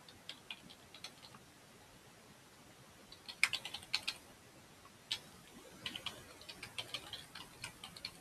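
Faint keystrokes on a computer keyboard, typed in irregular runs of quick clicks with a pause of about two seconds near the start.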